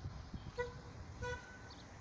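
Two short toots of a vehicle horn, about two-thirds of a second apart, the second a little longer, over a low rumbling background.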